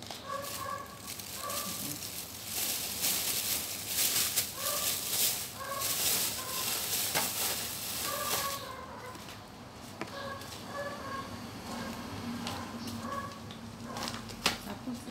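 Paper seed packets and a plastic bag rustling as they are rummaged through, loudest from a few seconds in until past the middle. Short pitched animal calls repeat in the background throughout.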